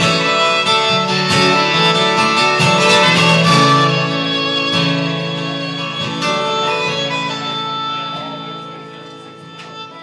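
Instrumental break: violin playing a solo over two acoustic guitars, fading over the last two seconds.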